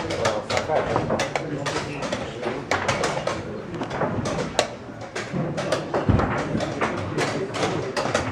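Voices talking in the background over a quick run of sharp clicks and knocks: chess pieces being set down on the board and the chess clock being pressed during a fast blitz game.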